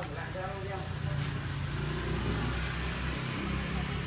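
A motor vehicle engine running nearby: a steady low rumble that grows louder about a second in and then holds.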